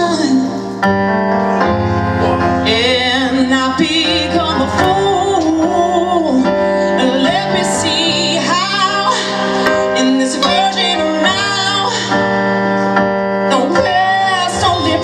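Live band music: women singing, with vibrato, over a keyboard and guitar.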